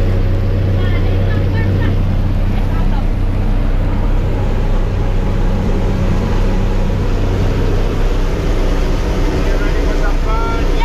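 Steady, loud drone of a skydiving jump plane's engine and propeller, heard from inside the cabin during the climb.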